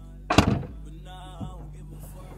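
Background music with one loud thunk about half a second in and a softer knock shortly before the end.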